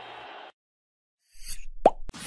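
A short cartoon-style pop sound effect, a quick pitched blip near the end, led in by a brief airy swish after a moment of silence.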